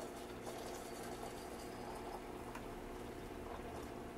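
Faint, steady room background: a low hum under a soft hiss, with no distinct event.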